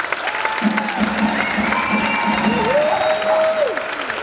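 Theatre audience applauding and cheering over live musical-theatre music, with held notes over a low note pulsing about four times a second.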